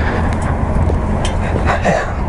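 Steady low rumble with a noisy haze, with a faint voice near the end.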